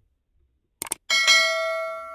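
A sharp click about a second in, followed at once by a bright bell ding that rings on and fades away: the stock sound effect of a subscribe-button click and notification bell.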